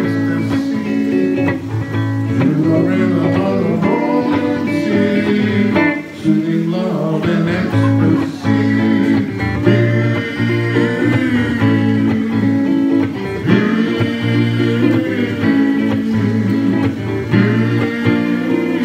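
Fender electric guitar played through an amplifier in an instrumental passage of a song, over a steady bass line.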